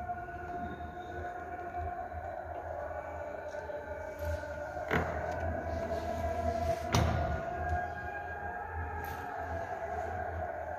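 A steady held droning tone with a few fainter higher overtones, broken by two sharp clicks about five and seven seconds in.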